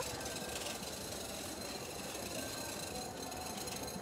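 Steady, low background noise of an indoor clothing market: an even hum with no distinct events.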